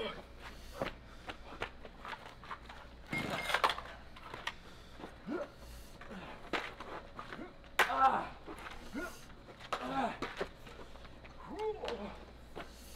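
Short, indistinct vocal sounds from raw fight-scene footage being played back, with scattered sharp knocks and clicks.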